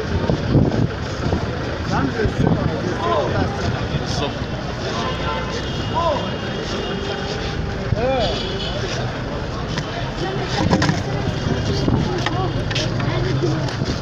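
Busy street noise with people talking in the background, over a steady low hum that grows stronger in the second half.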